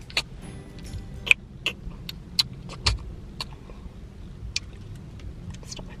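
Low steady hum inside a car cabin, with about ten sharp clicks and jangles of small objects being handled.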